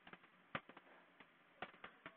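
Half a dozen faint, sharp clicks of computer keys, spread unevenly over two seconds, as lines of code are deleted.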